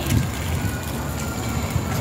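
A woman's short laugh at the very start, then steady outdoor background noise with a low rumble and no distinct event.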